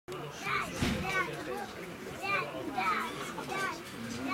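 High-pitched children's voices chattering and calling, with a brief knock just before a second in.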